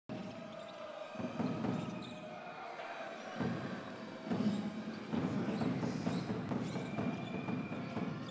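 A basketball bouncing on a hardwood court, with the general background noise of an indoor arena.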